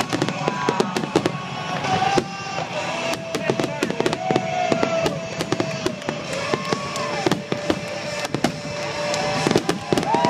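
Aerial fireworks shells bursting and crackling in quick succession, over music with long held notes.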